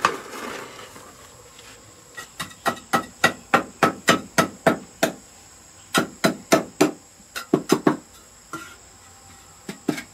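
A hand tool knocks repeatedly against packed earth and brick while dirt is dug out from under the base of a brick stove: two runs of sharp knocks about three a second, with a scrape near the start. A steady high insect drone runs underneath.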